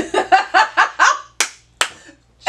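A woman laughing in a quick run of about five short bursts, then two sharp hand claps close together near the end.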